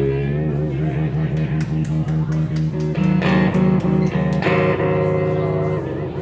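Amplified Strat-style electric guitar playing blues lead, with bent and wavering vibrato notes, then a chord held from about three-quarters of the way through that starts to die away near the end.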